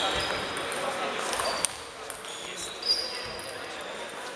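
Table tennis ball being hit in a rally, sharp clicks with the two loudest about a second and a quarter apart, over a murmur of voices in a hall.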